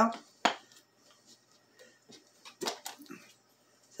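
Plastic clicks from the vent tab and lid of a Tupperware Crystal Wave Plus microwave soup mug as the vent is pushed down and the lid is worked off. There is one sharp click about half a second in and a quick cluster of clicks near three seconds.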